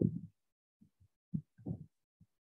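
A man's voice trailing off at the start, then a few short, soft vocal sounds, low murmurs or breaths, with dead silence between them.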